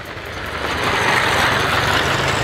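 A motor vehicle passing close by. Its engine and tyre noise swells over the first second and stays loud.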